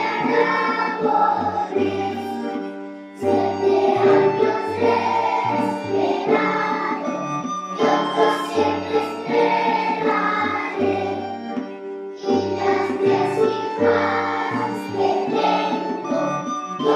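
A group of young schoolchildren singing a Spanish romance (a traditional ballad) together, in phrases with short breaks between them, over a musical accompaniment with a stepping bass line.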